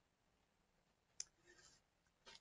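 Near silence with room tone, broken by one short, sharp click a little past halfway.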